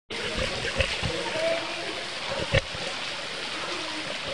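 Steady rush and splash of a waterfall, with faint voices of people mixed in. A few sharp knocks come about a second in and again halfway through.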